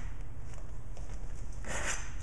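A low steady hum, then a short rubbing scrape near the end as the black powder-coated knife blade is drawn back out of the ridged plastic jug.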